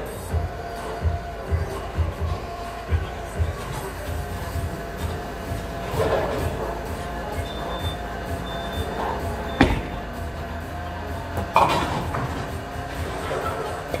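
Bowling alley sounds: a bowling ball rumbling down the lane and two sharp crashes, about ten seconds in and again two seconds later, typical of pins being hit. Background music with a thumping beat and chatter run underneath.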